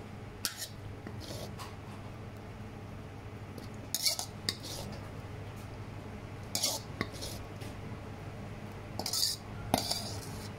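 A metal ladle scrapes and clinks against a steel wok as a stir fry is ladled out, in short strokes every second or two over a steady low hum.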